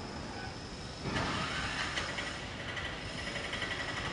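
Steady background room noise and hiss in a pause between speakers, with a brief swell of broad noise about a second in.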